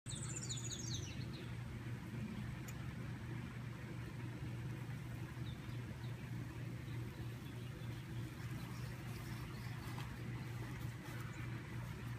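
A bird gives a quick series of high chirps, falling in pitch, in the first second and a half, over a steady low hum that runs throughout.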